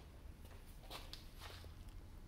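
A few faint, soft scuffs, about a second in and again shortly after, over a low steady room hum.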